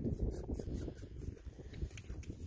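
Hoofbeats of a horse walking on packed dirt, with wind buffeting the microphone.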